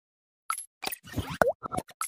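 Intro sound effects: a quick run of short cartoon-style blips and clicks, with a sharp dip-and-rise in pitch about one and a half seconds in as the loudest.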